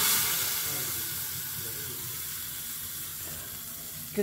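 Hot oil tempering (tadka) poured from a small iron pan into a pot of curd, sizzling with a sudden loud hiss that slowly dies away.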